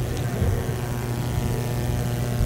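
Steady low electrical hum through the microphone and sound system, with a thin buzz of overtones above it.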